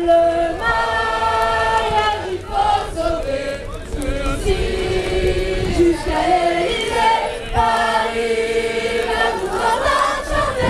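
A crowd of demonstrators singing a refrain together, many voices in unison, in sung phrases of long held notes with short breaks between them.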